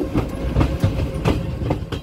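Indian Railways passenger coach running on the track, heard from its open doorway: a steady low rumble of the wheels with irregular clattering knocks.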